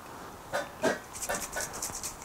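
Two light knocks from handling, then a quick run of short, sharp sounds as an aerosol can of cyanoacrylate glue activator is shaken.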